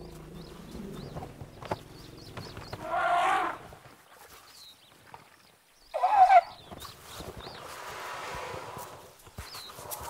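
African elephant squealing twice: a short call about three seconds in, then a louder one that falls in pitch about six seconds in.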